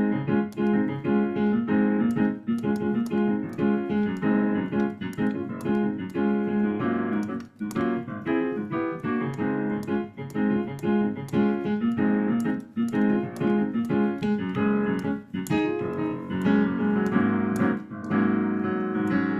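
Digital piano played continuously in chords with a melody on top, working through a C major, A minor, F, G (I–vi–IV–V) progression of a pop song intro, played back by ear.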